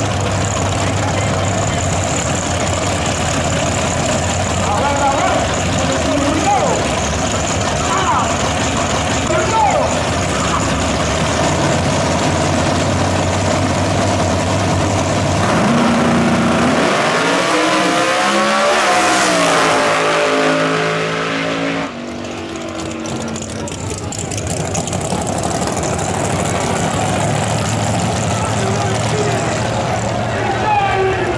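Drag cars rumbling at the starting line over crowd noise. About fifteen seconds in, the engines go to full throttle as the cars launch, rising in pitch through stepped gear changes. The engine sound cuts off suddenly about seven seconds later, leaving crowd noise.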